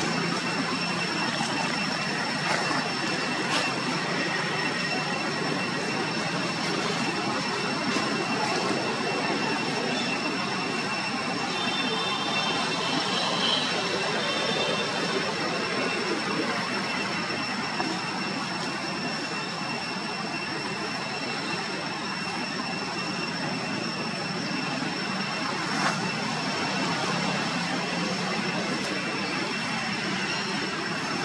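Steady outdoor background noise with a constant high-pitched whine running throughout, a few faint clicks, and brief faint chirps about halfway through.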